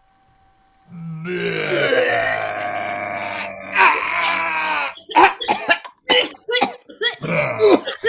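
Several people vocally faking vomiting: after a second of quiet, a long drawn-out retching sound, then a quick run of short gagging heaves.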